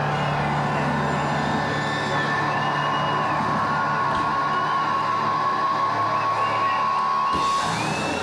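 A live band playing loud music, with a steady high note held from about two seconds in until shortly before the end, where the low drone drops out.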